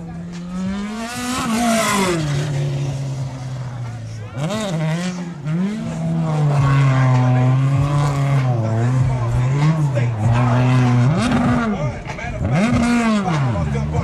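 Open-wheel single-seater race car's engine revving hard while the car slides and spins, its pitch climbing and dropping again and again, with two quick blips near the end. Tyre squeal runs underneath as the car spins in its own tyre smoke.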